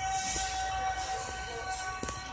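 One steady, high-pitched tone held on a single unwavering note for about two and a half seconds.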